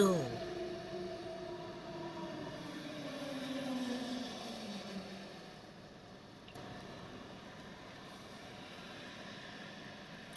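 A woman's voice held in one long, slowly falling hum or drawn-out note for about five seconds, then only faint steady background noise.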